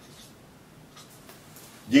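Faint scratching of a marker writing on a flip-chart board, over a quiet room, before a man's voice resumes near the end.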